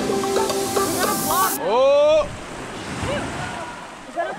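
Background music with held notes ends about a second in, cut off by a loud rising shout from a person. Small waves then wash up onto a sand beach in the shore break.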